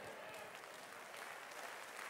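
Faint, steady applause from a seated congregation.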